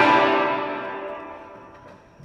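Acoustic guitar's last chord ringing out and fading away over about two seconds.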